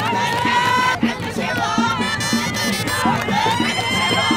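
A roadside crowd cheering and shouting, with high voices holding long wavering calls, over music with a steady beat.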